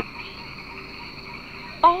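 Steady night chorus of frogs and insects: an even, high chirring that runs on without a break.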